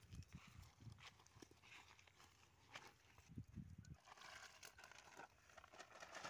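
Near silence outdoors, with only faint scattered clicks and rustles.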